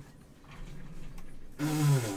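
A quiet stretch of room tone, then a loud, drawn-out spoken "ooh" near the end.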